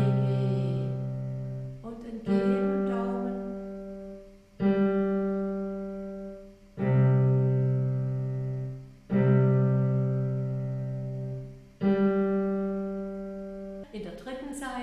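Digital piano playing slow left-hand two-note chords, the thumb holding G while the lower note changes. Six chords are struck about two seconds apart, each held and fading before the next.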